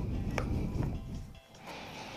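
Quiet background music, with low rustling and two light clicks in the first second as a small cardboard product box is handled and slid open.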